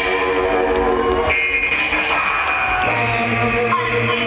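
Live trip-hop band playing an instrumental passage through a festival PA, heard from the crowd: electric guitar over sustained tones, with a low bass note coming in near the end.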